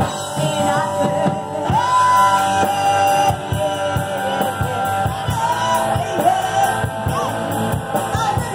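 A live rock band playing: sung vocals over electric guitar, bass and a drum kit, heard from in front of the stage.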